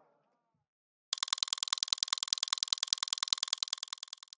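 Glitch sound effect for an animated logo: a rapid, even stutter of sharp high-pitched ticks, about ten a second, starting about a second in.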